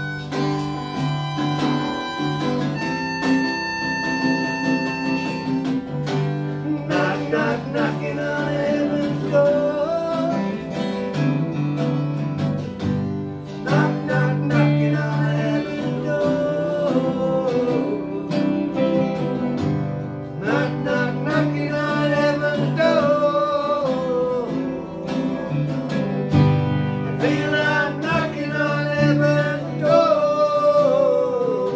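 Live acoustic music: two acoustic guitars strummed, with a harmonica playing held notes for the first few seconds, then a man's voice singing over the guitars from about seven seconds in.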